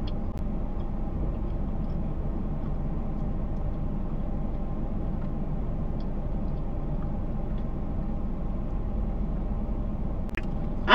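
Steady low rumble of a car heard from inside its cabin, with a faint even hum and a few faint small clicks.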